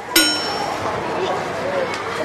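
A single sharp metallic clang just after the start, ringing briefly with a bell-like tone before fading, over steady background noise.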